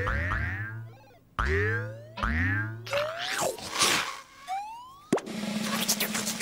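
Cartoon 'boing' sound effects for a big bouncing ball: a quick run of boings dies away in the first second, then four more follow a second or so apart. Just after five seconds there is a click, and a steady low hum begins.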